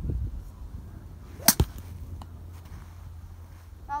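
TaylorMade M2 golf driver striking a golf ball off a mat: one sharp, loud crack about one and a half seconds in, followed almost at once by a second, duller knock, on a shot called a great one.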